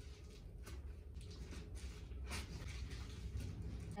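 Plastic mailer package being cut open with a knife and the clothing pulled out: irregular small crackles and rustles of plastic, over a low steady hum.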